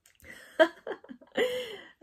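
A woman laughing softly: a few short breathy bursts, then a longer laugh that falls in pitch.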